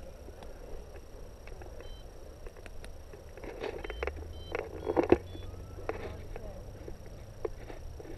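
Light wind rumbling on the microphone, stronger in the second half, with scattered small clicks and taps from handling of the camera and harness.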